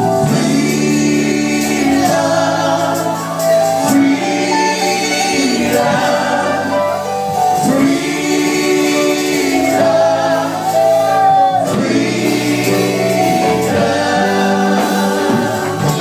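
A group of voices singing a gospel worship song together, loud and continuous, in long phrases of held notes.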